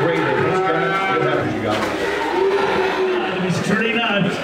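Cattle mooing in an auction ring: one long moo that rises and falls in pitch over the first second and a half, with people talking in the background.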